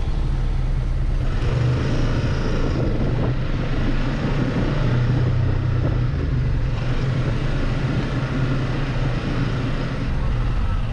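Yamaha Wolverine X2 side-by-side's engine running at low revs as it creeps forward at walking pace, heard from inside the open cab as a steady low drone. The sound picks up twice, about a second and a half in and again around seven seconds.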